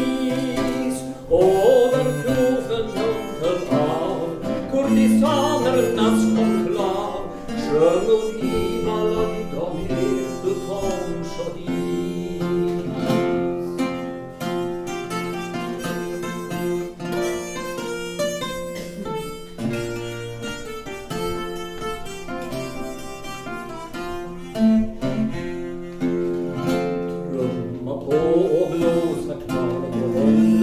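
Live acoustic music: an acoustic guitar accompanying a wavering melody line, played as a passage between sung verses of a troubadour song.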